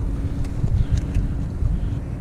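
Wind buffeting the microphone of a head-mounted action camera: a loud, uneven low rumble, with a faint steady hum underneath and a few faint ticks.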